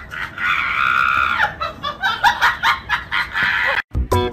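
A person laughing hard: a long, high-pitched shriek of laughter about half a second in, then quick bursts of laughter that cut off suddenly just before the end.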